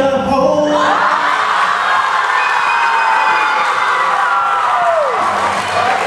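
Audience of schoolchildren cheering, whooping and shrieking. It breaks out under a second in, just as the singing stops, with one long high cry sliding down near the end.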